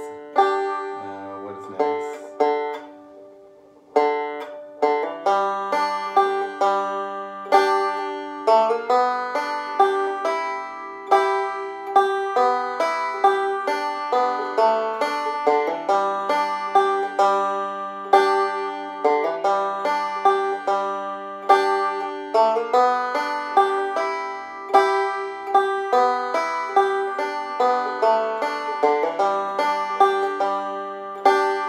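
Five-string banjo played solo. A few plucked notes come first, then a brief pause, then from about four seconds in a steady run of picked, ringing notes.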